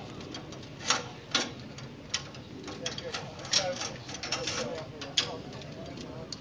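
Several sharp metallic clicks at irregular intervals: climbing carabiners and harness lanyard clips being handled and clipped.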